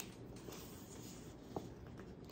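Faint rustle of a picture book's paper pages being handled and moved, with a small tap about one and a half seconds in.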